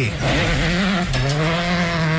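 Rally car engine running at high revs on a gravel stage. Its note dips and climbs back twice in the first second, then holds steady. A gravelly hiss is strongest at the start.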